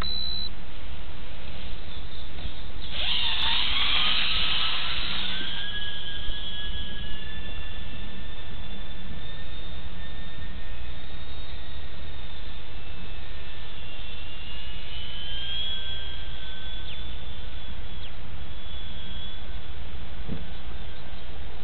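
Small electric brushless motor and propeller of an E-flite UMX P-47 BL ultra-micro RC plane, heard close up: a high whine that surges loudly about three seconds in as the throttle opens for takeoff. After that the whine holds, its pitch drifting up and down with the throttle, over a steady rushing noise.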